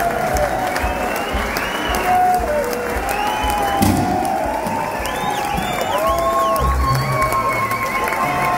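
Concert crowd cheering, shouting and whistling between songs, with loose, scattered notes and thumps from the band's instruments on stage.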